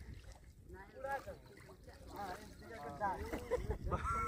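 Faint, distant men's voices talking over a low, steady rumble.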